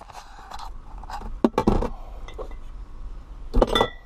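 Handling noise from a centre-console car fridge holding drink cans: scattered knocks and scrapes, two sharper knocks about a second and a half in, and a cluster of clinks near the end with a brief ringing note, as of a can or the lid being moved.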